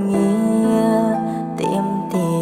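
Sped-up version of a Khmer pop song: held melodic notes that step from pitch to pitch over a soft, gentle accompaniment.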